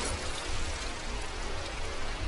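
Small waves washing over a pebble shore: a steady, fizzing hiss of water running among stones.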